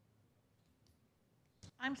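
Near silence with faint room tone, then a single sharp click near the end, just before a voice begins to speak.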